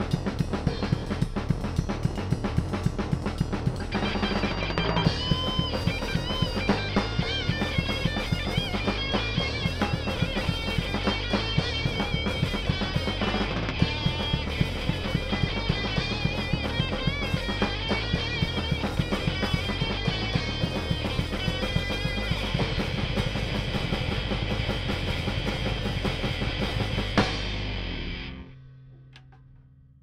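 Thrash metal band playing live in a rehearsal room: drum kit with a fast, steady beat, electric guitar and bass guitar, with no singing. From about five seconds in, a high guitar lead with bent, wavering notes plays over the band; near the end the song stops on one final hit that rings out and fades.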